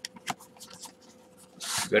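Cardboard and plastic toy packaging being handled as an action figure is slid out of its box: a few light ticks and taps, then a louder scraping rustle of the packaging about one and a half seconds in.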